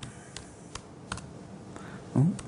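A few scattered computer keystrokes, about five sharp clicks spread unevenly over two seconds, as code is being edited.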